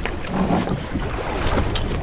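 Wind buffeting the microphone over the wash of open sea against a boat's hull, a steady low rumble.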